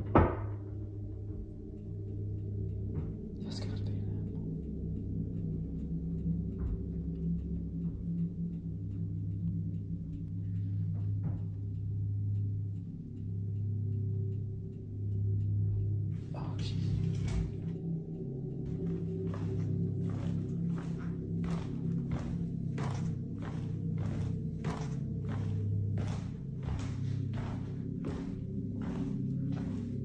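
A low, droning music bed with one loud thunk right at the start, a bang from beneath the house floor. From about two-thirds of the way in, a regular ticking of about two strokes a second joins in.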